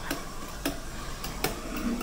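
A few light clicks and taps, about five in two seconds, as a hand wipes a tissue over the kiddie ride's metal coin and button panel.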